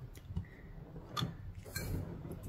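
A few faint, light clicks of small parts being handled over a low steady hum.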